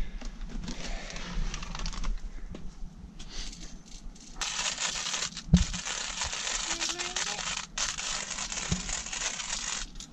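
Hand-cranked coffee grinder grinding coffee beans. A crunching, scraping rasp is faint at first, then becomes loud and continuous from about four seconds in, with a brief pause and a single low knock partway through.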